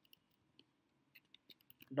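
Faint scattered keystrokes on a computer keyboard, a handful of light clicks that come closer together in the second half as a word is typed.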